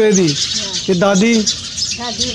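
Many small birds chirping continuously in the background, under a woman's speech that comes twice and is the loudest sound.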